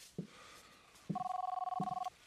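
A telephone ringing: one two-tone electronic ring that starts about a second in and lasts about a second.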